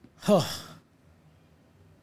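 A man's short, breathy sighing "oh", falling in pitch and lasting about half a second.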